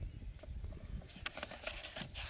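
Faint handling of a paper booklet held in the hands: a few light ticks over a low outdoor rumble.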